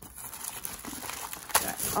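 Thin plastic wrapping crinkling as it is handled, with one sharper crackle about one and a half seconds in.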